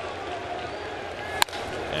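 Ballpark crowd murmuring, with a single sharp crack of the bat hitting the pitch about one and a half seconds in, the start of a ground ball.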